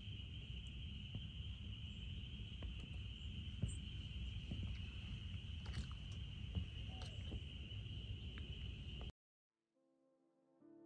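Outdoor ambience: a steady, high-pitched chorus of calling animals over a low rumble, with a few faint clicks. It cuts off suddenly about nine seconds in.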